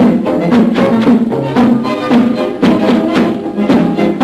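Military marching band playing a march: a brass melody over bass drums and cymbals striking on a steady beat, about two strokes a second.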